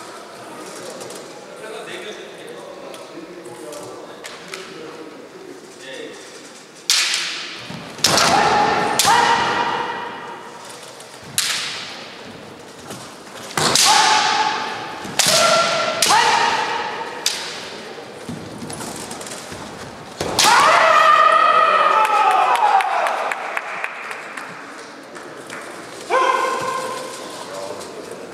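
Kendo bout: fighters yelling kiai shouts, several long cries that slide in pitch, each struck with sharp cracks of bamboo shinai on armour and foot stamps on the wooden floor. Quieter stretches of shuffling footwork lie between the exchanges.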